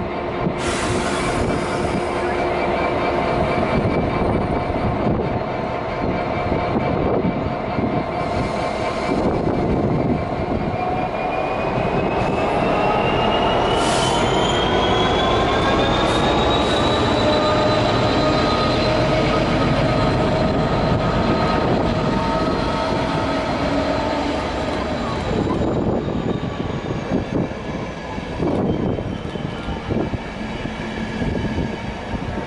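Trains running through a station: an electric locomotive, then a Class 66 diesel locomotive and a multiple unit passing, with steady hum and rail noise throughout. A whine rises in pitch over several seconds about halfway through.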